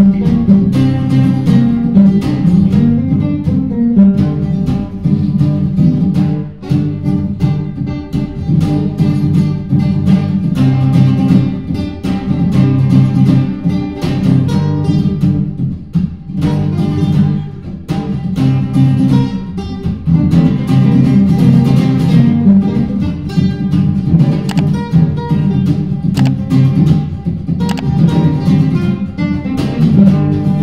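Two acoustic guitars, a nylon-string classical and a steel-string, playing together. One strums a G and C chord progression while the other improvises a pentatonic lead over it.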